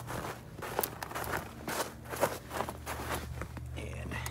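Footsteps crunching through trampled snow, a steady series of short steps.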